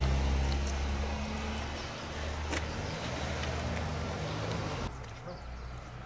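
A motor vehicle's engine running close by, a steady low hum that starts abruptly and drops away about five seconds in.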